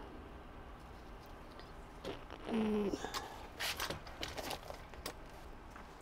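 Quiet handling of a plastic aeroponics bucket and its lid: a brief low hum, likely a voice, about two and a half seconds in, then a short run of light clicks and rustles over the following second or two.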